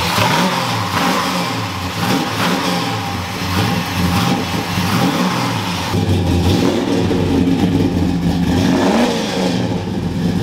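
Chevrolet Chevelle SS's V8 engine, just started off a jump pack, revved over and over, its pitch rising and falling with each blip, then held at a higher, steadier speed in the last few seconds.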